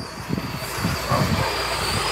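Water-fed pole brush scrubbing along a wet solar panel: an uneven swishing of bristles and water dragged over the glass.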